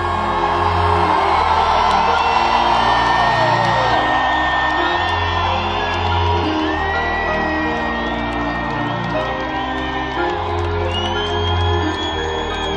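Live rap concert music over an arena sound system, with long held notes and a deep bass that swells every couple of seconds, and a large crowd whooping and shouting. It is heard from among the audience, with the echo of a big hall.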